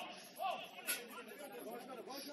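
Overlapping voices of several people chattering and calling out, with a single sharp knock about a second in.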